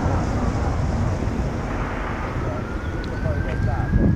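Outdoor background of low wind rumble on the microphone and distant traffic, with a faint tone slowly rising and falling twice and a voice coming in faintly near the end.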